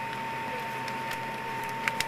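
Steady cabin noise inside a McDonnell Douglas MD-80 airliner on the ground: an even low hum under a single steady high whine, with a few light clicks.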